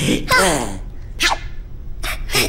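Wordless cartoon character voices: a short cheerful voiced sound, then a quick breathy burst about a second in.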